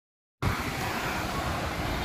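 Street traffic: a steady hum of passing motor scooters and cars, starting abruptly less than half a second in.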